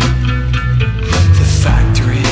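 Rock band recording with electric guitar, bass and drums, the drums marking the beat with sharp hits over sustained bass notes.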